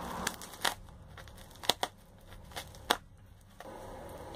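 Bubble wrap and tape being cut open with a red-handled cutting tool: plastic crinkling, with several sharp clicks. A steady hiss comes in near the end.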